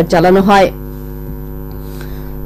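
Steady electrical mains hum, several even unchanging tones, left on its own when a news reader's voice stops under a second in.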